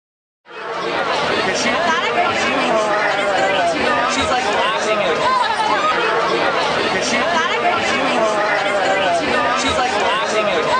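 Crowd chatter: many voices talking at once, none standing out. It starts suddenly about half a second in, after a brief silence, and stays at a steady level.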